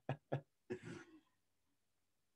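The tail of a man's laughter, a few short chuckling pulses, then a brief throat clearing about a second in.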